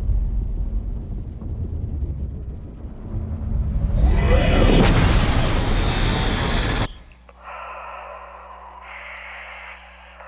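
Science-fiction film trailer sound effects. A deep rumble comes first, then a rising whoosh about four seconds in that swells into a loud rush of noise as a spaceship flies past. This cuts off sharply about seven seconds in, giving way to a quieter steady hum with faint held tones.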